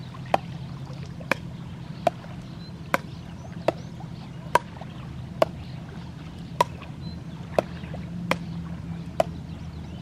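A ball being struck back and forth with paddles in a rally: a sharp knock with a short ring roughly once a second, evenly paced, over a steady low hum.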